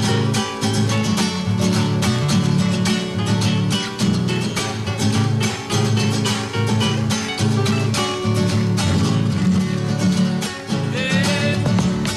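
Instrumental passage of Chilean folk music: several acoustic guitars strummed briskly in a steady rhythm. A voice begins singing near the end.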